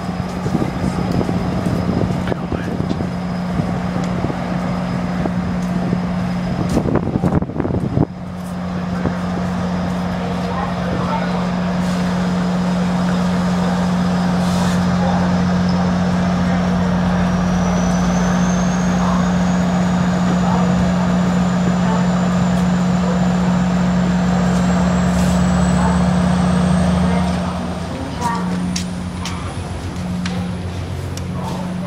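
Passenger train standing at a station platform: a steady low hum, with a thin whine that climbs steadily in pitch over the second half. A brief rattle comes about seven seconds in, and the hum drops away near the end.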